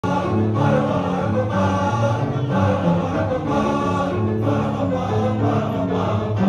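A choir of young male voices singing in harmony, the chords changing every half second to a second.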